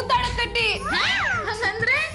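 Background score of swooping, meow-like sound effects, a string of pitch glides rising and falling a few times a second.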